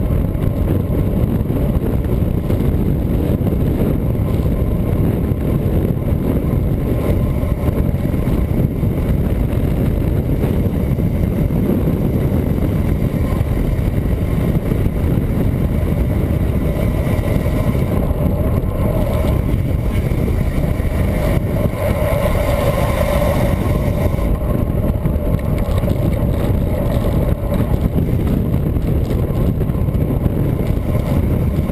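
Wind buffeting a bike-mounted camera's microphone on a fast road-bike descent: a loud, steady low rumble. In the second half a faint hum swells and then fades.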